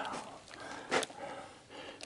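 Faint handling noise with one short, sharp click about halfway through.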